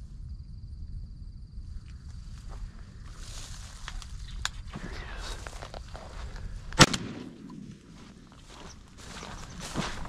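Footsteps and rustling through dry brush and grass, then about seven seconds in a single loud shotgun shot with a short ring after it.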